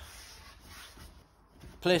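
Faint rubbing and sliding of hands shaping a ball of bread dough into a tight ball on a wooden board, swelling slightly in the first second.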